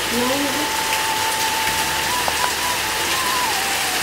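A thin waterfall falling steadily down a rock face into a shallow pool, a continuous even splashing hiss of water.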